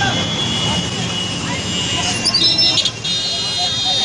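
Congested street traffic: motorbike and scooter engines running and people's voices in the street. Steady high horn tones start about halfway through.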